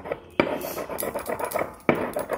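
Stone pestle grinding soaked saffron threads in a stone mortar (kharal): a gritty rubbing, with a sharp stone-on-stone knock about half a second in and another near the end.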